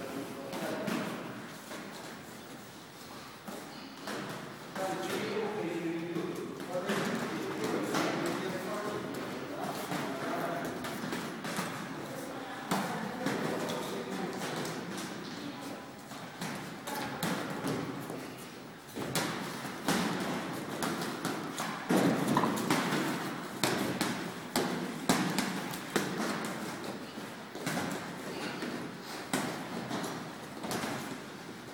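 Boxing sparring: irregular thuds and slaps of gloved punches and footwork on the ring canvas, densest and loudest in the last third, with indistinct voices throughout.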